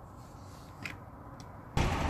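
Quiet outdoor background with two faint clicks, then near the end the low, steady running of a truck's diesel engine cuts in abruptly.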